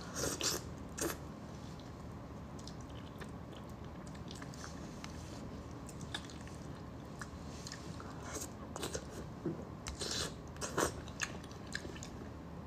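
Close-miked mouth sounds of a person eating braised fish tail: wet chewing, biting and lip smacks in short bursts, a cluster of them in the first second and several more in the last few seconds, with softer scattered clicks in between.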